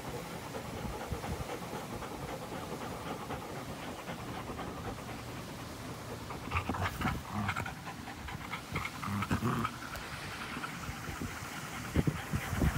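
A dog panting close to the microphone, with louder, irregular short sounds from about halfway through.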